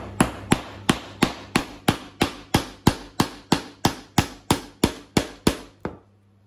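Steel hammer driving a nail into a softwood pine board: a steady run of about eighteen sharp strikes, roughly three a second.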